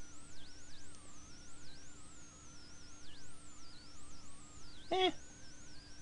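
A thin whistling tone that wavers continually up and down in pitch, over a low steady hum. A short 'eh' from a voice comes about five seconds in.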